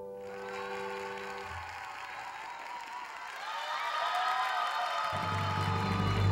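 Studio audience applause rising as the slow, tender dance music's last held notes fade out in the first second or so. A low steady music bed comes in near the end.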